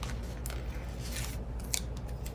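A paper planner sticker being peeled off its sticker sheet: a few short, sharp paper crackles.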